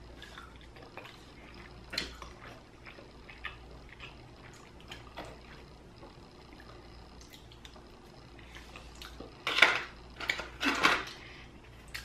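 Close-miked eating: faint chewing and wet mouth clicks, with a plastic fork clicking and scraping in a takeout container. A few louder scraping and handling sounds come about two seconds before the end.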